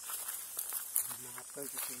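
Footsteps and rustling through dry brush on a forest trail, with a sharp click about a second in. A low voice speaks or hums briefly in the second half.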